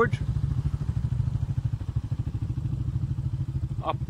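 Motorcycle engine running steadily under way, a low, evenly pulsing sound.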